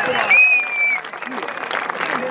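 Audience applauding as the music ends, with one high held note, falling slightly, during the first second before the clapping carries on alone.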